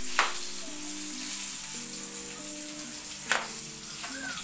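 Pork chop morcon frying in hot oil in a wok: a steady, even sizzle, with two sharp clicks, one near the start and one about three seconds later.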